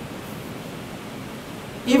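A pause in a man's talk filled by a steady hiss of background noise; his voice returns right at the end.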